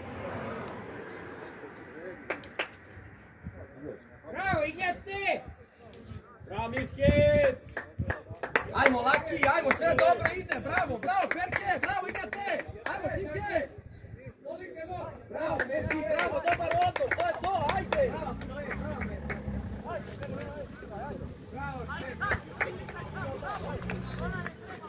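Several voices shouting across an open football pitch: calls between players and from the touchline, with one loud drawn-out shout about seven seconds in. The shouting is densest in the middle of the stretch and eases off toward the end.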